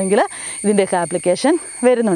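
A woman's voice speaking, explaining in a classroom manner.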